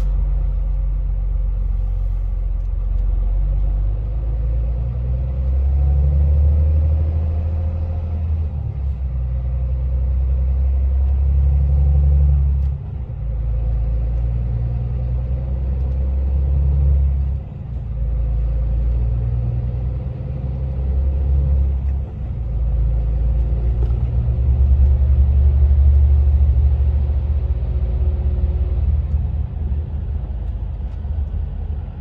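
Low rumble of a truck's engine and tyres heard from inside the cab while driving, swelling and dipping several times.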